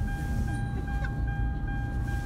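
Low, steady rumble of a car's engine and road noise heard inside the cabin while driving, with a thin steady tone above it.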